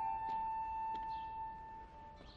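Background score: a flute-like wind instrument steps upward and then holds one long note, which fades out shortly before the end.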